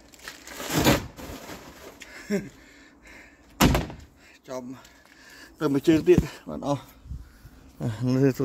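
A single heavy thunk a little before halfway, preceded by a brief swish about a second in, amid short bursts of a man's wordless voice.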